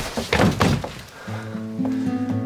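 A punch landing with a sharp smack at the start, followed by a brief thud and scuffle as the man falls against a leather sofa. Background music with sustained low notes comes in a little over a second in.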